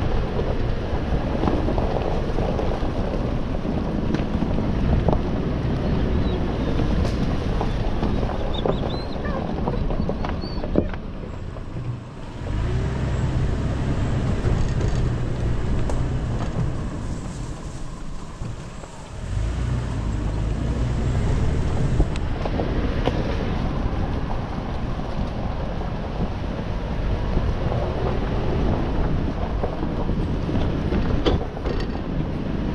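Trail-driving noise of a 2020 Toyota 4Runner TRD Off Road on a rough dirt track: a steady low rumble of engine and tyres with wind hiss on the microphone and scattered small knocks. The hiss thins out for several seconds in the middle, leaving mostly the low rumble.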